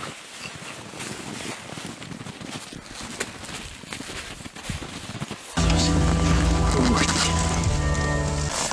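Faint rustling and scattered small clicks, then background music comes in suddenly about five and a half seconds in, with a steady low bass note and held tones.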